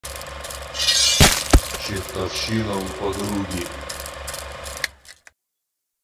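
Sound-designed intro sting: a low pulsing drone with mechanical clicking, two sharp hits a little after one second and a voice-like phrase in the middle. It ends with a hit about five seconds in and cuts off to silence.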